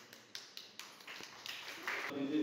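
Scattered, faint hand claps from a few people, irregularly spaced at a few per second and growing a little louder near the end.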